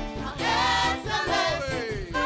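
Gospel praise team singing together into microphones with keyboard accompaniment, several voices holding and sliding between sustained notes.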